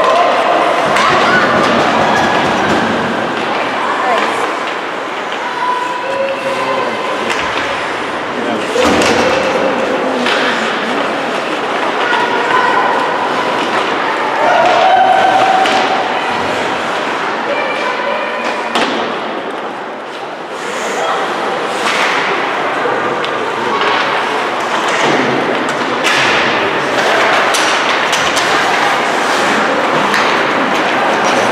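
Ice hockey game sounds in an indoor rink: repeated sharp thuds and clacks of puck, sticks and players hitting the boards, with scattered shouts and chatter from players and spectators throughout.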